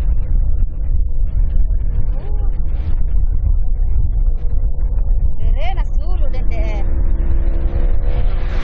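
Racing boat engines running with a deep, steady rumble, and voices calling out about six seconds in.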